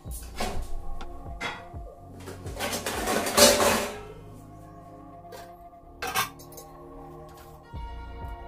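Steel cooking pots and lids clanking and knocking against each other and the stove, with a louder, longer noisy stretch about halfway through, over steady background music.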